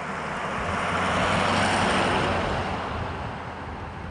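Pickup truck passing by: its engine and tyre noise rise to a peak about two seconds in, then fade as it drives away.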